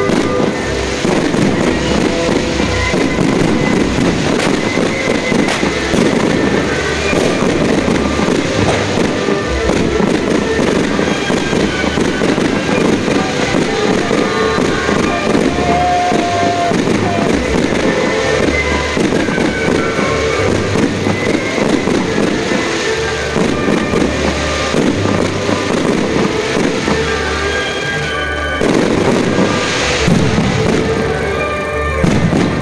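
Fireworks display: a continuous, rapid string of aerial shell bangs and crackling bursts, over loud music with a pulsing bass.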